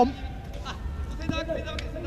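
Stadium ambience of a football match broadcast in a pause in the commentary: a steady low background rumble with a few faint, distant voices.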